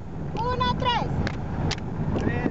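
A girl's high voice singing a short phrase, with sharp hand claps, over the steady low rumble and wind of a moving van with its windows open.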